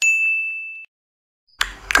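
A single bright ding sound effect: one high, clear chime that strikes sharply and fades for under a second before cutting off.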